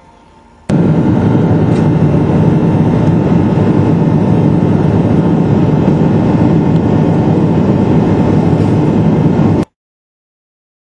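Steady, loud rushing noise inside an airliner cabin in flight: engine and airflow noise coming through the fuselage. It starts abruptly about a second in and cuts off just before the end.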